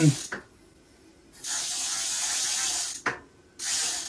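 Rear freewheel of a Gates belt-drive e-bike buzzing as the wheel spins freely: a relatively loud, fast ratcheting that starts about a second and a half in, breaks off briefly just after three seconds and picks up again near the end.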